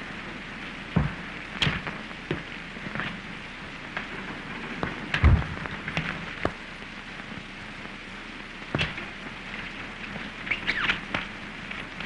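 Steady hiss of an early sound-film soundtrack, with scattered clicks and a few knocks at irregular times. The loudest knock comes about five seconds in, and a small cluster of clicks comes near the end.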